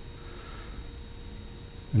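A pause in speech: low, steady room rumble with a faint constant hum.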